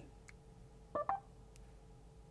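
A short two-note electronic beep from the Mercedes MBUX infotainment system about a second in, as the voice assistant takes a spoken request, in a quiet car cabin.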